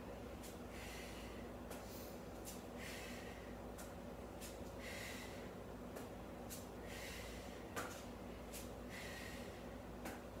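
A woman breathing hard with exertion while holding a plank, a short forceful exhale about every two seconds. Faint clicks and a steady low hum sit underneath.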